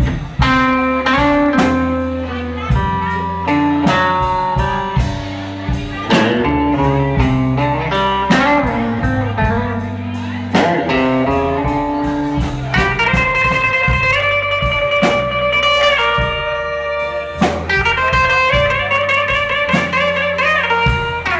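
Live blues band: an electric guitar plays lead lines over bass and a drum kit, with bent notes and, from about two-thirds of the way in, long held notes.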